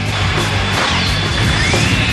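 Anime soundtrack: background music under a dense, noisy crash-like battle sound effect, with a long whine that rises and falls in the second half.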